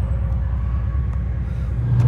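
A 1991 Cadillac Brougham's V8 idling, heard from inside the cabin as a steady low rumble.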